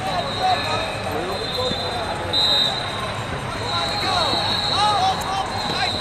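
Wrestling shoes squeaking in short chirps on the mat as two wrestlers scramble, over the background voices of a large hall.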